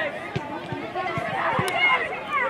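Several children's voices calling and shouting over one another.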